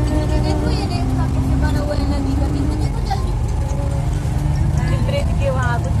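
Bus engine running steadily, a constant low rumble heard from inside the cabin, with voices and music over it.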